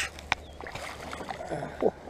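Splashing water as a hooked bass is reeled up to the side of an aluminium jon boat, with a sharp knock about a third of a second in. A short vocal exclamation near the end is the loudest moment.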